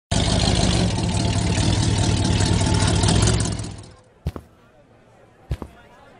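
Pickup truck engine running, dying away about four seconds in, followed by a few sharp knocks of boot footsteps on pavement.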